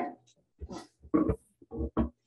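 Halting speech in the meeting room: a voice in a few short bursts with pauses between them.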